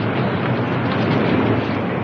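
Steady, dense hubbub of a large street crowd.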